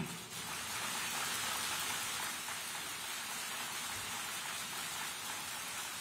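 Audience applauding in a large hall: steady, dense clapping that starts just as the speech stops.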